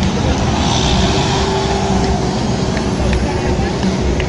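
Road traffic at a busy junction: vehicle engines and tyre noise from passing minibuses and cars, a steady din with voices mixed in.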